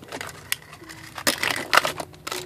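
A hand rummaging among plastic pacifiers in a clear plastic storage bin, giving a rustle and several sharp plastic clicks and clatters.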